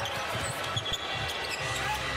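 Basketball dribbled on a hardwood court, a quick run of bounces.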